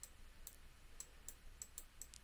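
Faint clicks of a computer mouse button, about six over two seconds, as knobs on a software gradient are clicked and dragged.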